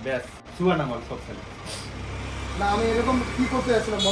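Low engine rumble of a passing vehicle, building from about a second in, under a man's speech.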